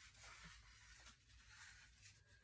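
Faint rubbing of a small wipe across a cutting mat, wiping off wet paint.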